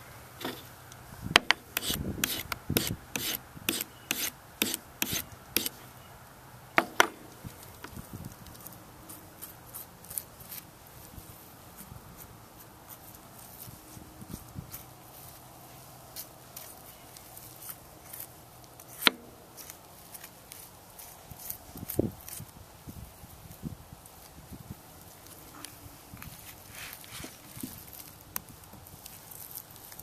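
Knife cutting and scraping along a lamb's shoulder blade to bone it out on a plastic cutting board: quiet rubbing and scraping with a quick run of light clicks and taps in the first few seconds, then a few single, sharper knocks.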